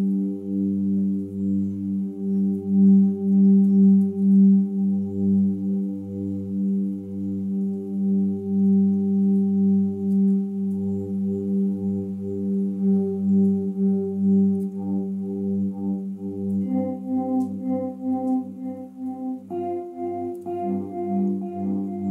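Meditative ambient music: a sustained low droning chord that swells and pulses in volume. In the second half the chord shifts a few times as higher notes come in.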